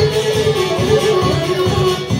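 Live folk band playing an instrumental passage: a melody line over plucked strings and a steady, even beat.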